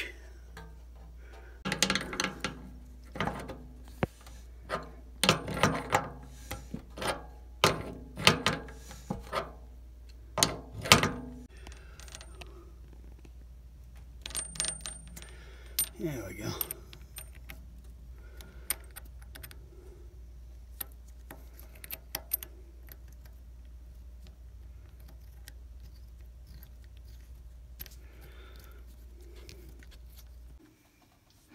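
Small metal plumbing fittings clinking and knocking as a braided stainless-steel supply hose's nut is handled and threaded onto a brass faucet shank by hand. The clicks are densest in the first dozen seconds, then come sparsely and die away.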